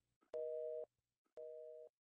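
Telephone busy tone after a call is cut off: a steady two-note beep, on for about half a second and off for about half a second, heard twice.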